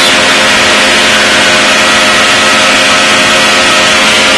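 Engine and propeller of a Challenger light-sport airplane running steadily in flight: a loud, even drone with a steady hiss of rushing air.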